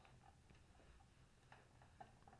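Near silence: room tone with faint, small ticks roughly twice a second.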